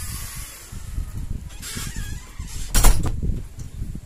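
A wooden interior door swinging open as someone steps through, with rustling movement and one sharp knock about three seconds in as the door is shut.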